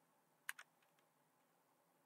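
Near silence broken by a quick pair of sharp clicks about half a second in, then two or three faint ticks, as from a computer keyboard or mouse being used.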